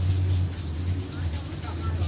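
A steady low hum from a running machine, with faint distant voices over it.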